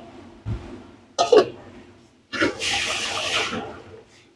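Pot lids being handled on a gas stove: a glass lid knocks and clinks against a steel pot, then a longer rasping noise follows, like metal lid scraping.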